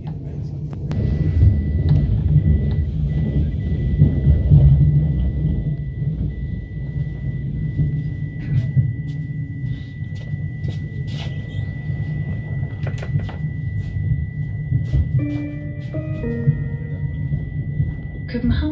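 Cabin sound of an Alstom/Siemens-built electric commuter train running through a tunnel: a steady low rumble from the wheels and running gear, with scattered sharp clicks from the track and a thin steady high tone. About fifteen seconds in, a short multi-note chime sounds, the on-board cue before a station announcement.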